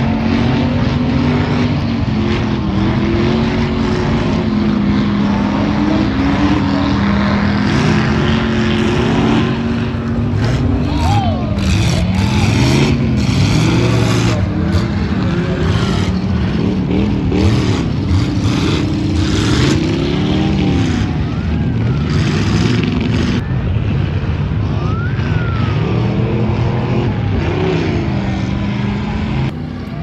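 Several enduro race cars' engines running hard around a dirt oval. Their pitch rises and falls again and again as the cars accelerate, lift and pass.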